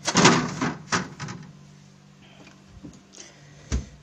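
Plastic bags of bait being handled at an open refrigerator: a loud crinkling rustle at the start, a sharp click about a second in, and a short low thump near the end.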